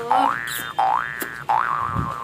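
Cartoon-style 'boing' sound effect, repeated: each is a quick upward glide in pitch that then holds briefly, coming about three times, roughly 0.7 s apart.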